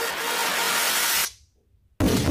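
A whooshing noise sweep from a music video's soundtrack: a dense hiss that builds, then cuts off suddenly a little past the middle, leaving near silence.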